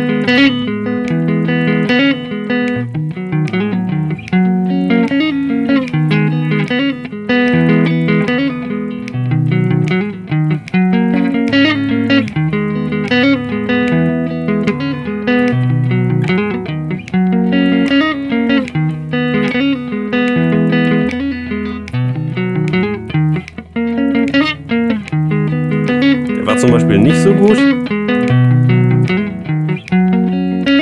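Electric guitar, a Squier Stratocaster, playing a steady run of low single notes in a pattern that repeats.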